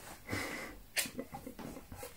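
Handling noise from an electric bass and its cable: a short breathy rush, then a sharp click about a second in, followed by a few light knocks.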